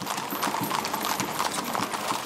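Hooves of a column of horses walking on an asphalt street: many overlapping, irregular clip-clops.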